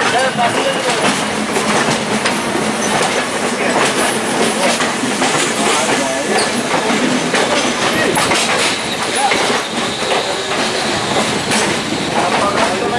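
Passenger train running at low speed, heard from an open coach door: a steady rumble of wheels on track with irregular clicks and clatter over rail joints and points.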